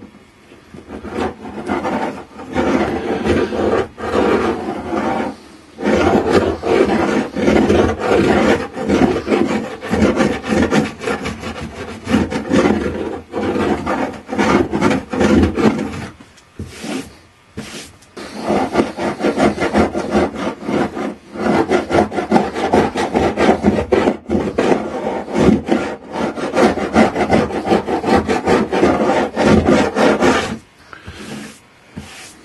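Double-bladed grout tool scraping back and forth in the seams of mahogany planking, raking out hardened seam putty in quick rasping strokes. The scraping breaks off briefly about five seconds in and again for a second or two around the middle.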